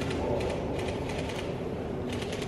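A camera shutter clicking repeatedly, several frames in quick succession, over a steady low background hum.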